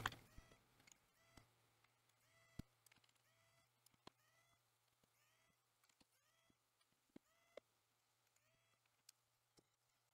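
Near silence: a low steady hum with a few faint, sharp clicks as small laptop screws are undone with a screwdriver and set down.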